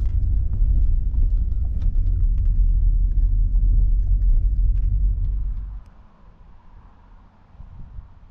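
Car driving slowly on a gravel road, heard inside the cabin: a steady low rumble with scattered small clicks of gravel under the tyres. It cuts off abruptly about six seconds in, leaving a faint background.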